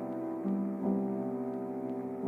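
Slow, soft background piano music, with held notes and new ones struck about half a second and just under a second in.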